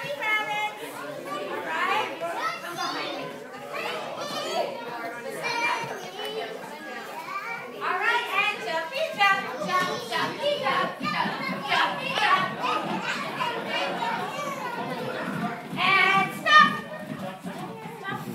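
A room full of toddlers and adults talking and calling out at once, overlapping and unintelligible, in a large hall. Near the end comes a louder burst of high children's voices.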